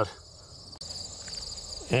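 Insects trilling steadily, high-pitched, with a second, louder trill joining about a second in.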